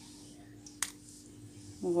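A single sharp click a little under a second in, over a faint steady hum.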